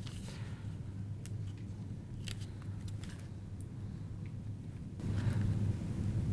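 Faint scattered rustles and small clicks of hands handling red tape and pressing it onto kraft poster board, over a low steady hum.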